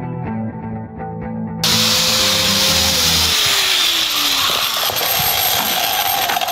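Background music, then about one and a half seconds in an angle grinder with a metal-cutting disc starts cutting through a wooden form board, loud and steady to the end.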